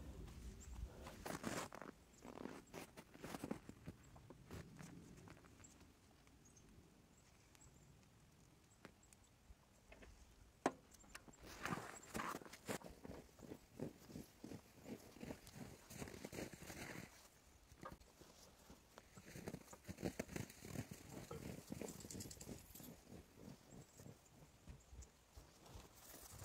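Faint, scattered light clicks, crunches and rustling from hands working at the loader arm in snow, with an almost silent stretch about six to nine seconds in.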